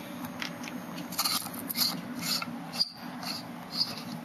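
Irregular rubbing and scraping handling noises as multimeter test leads and probes are moved about on a wooden tabletop.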